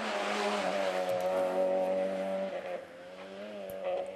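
Peugeot 106 Rally's engine held at high revs as the car is driven hard. A little under three seconds in, the pitch dips and the sound drops, then it climbs again near the end.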